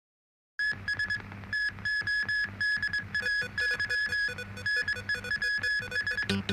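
Electronic news theme music with a fast, pulsing synthesizer tone repeating over a pulsing bass, starting about half a second in.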